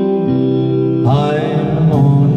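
Karaoke backing track playing an instrumental passage between sung lines: held chords, with a new chord coming in about halfway through.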